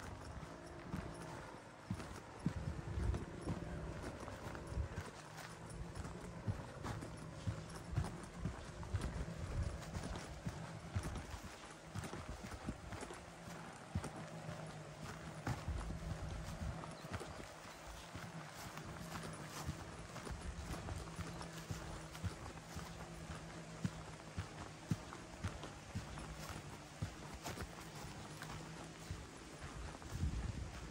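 Footsteps of a walker at a steady pace on a dry grass-and-dirt track, over a faint steady low hum.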